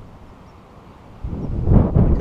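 Wind buffeting the microphone: a low rumble that is quieter at first, then a gust that builds about a second in and grows loud near the end.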